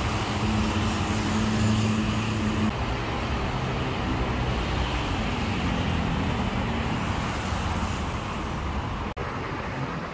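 Busy road traffic: cars and motor scooters running past in a steady drone of engines and tyres. A low engine hum stands out early and drops away about a quarter of the way in, and the sound cuts out for an instant near the end.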